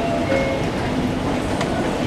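Hitachi EX-series escalator, installed in 2002, running: a steady, continuous mechanical rumble of the moving steps and drive, mixed with the hubbub of a busy station.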